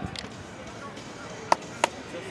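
Outdoor sound of a rugby sevens match in play: faint shouts from players, then two sharp smacks about a third of a second apart near the end.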